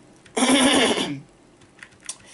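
A man coughs once, a single rough, throaty cough lasting under a second.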